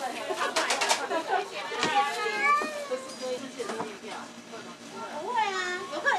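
Vocal sounds with drawn-out rising and falling pitch, preceded by a short run of crackles about half a second in.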